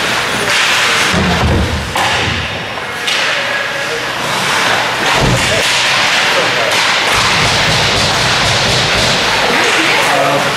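Ice hockey play: skate blades scraping and hissing on the ice, with several sharp clacks and thuds from sticks, puck and boards, the clearest about two, three and five seconds in.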